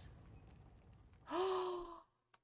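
A woman's short, breathy voiced sigh about a second and a half in, its pitch holding and then dropping slightly: a sad, dismayed reaction. Before it there is only a faint low background.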